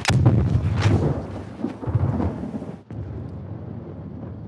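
Film sound effect of an atomic bomb's shockwave arriving: a sharp bang at the start, then further heavy blasts about a second apart, settling into a lower rumble like thunder. Each bang is the blast felt at a different distance.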